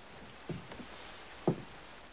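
Two soft, dull taps about a second apart over a faint steady hiss of room ambience.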